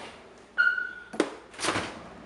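A refrigerator door being handled and pulled open: a sharp knock about half a second in with a brief high ringing tone, a click, then a short rush of noise as the door swings open.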